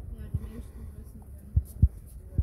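Dull, low thumps of footsteps and handling noise from a person walking along a dirt path while holding the recording phone, a few irregular knocks with the two loudest close together near the end. Faint voices in the background.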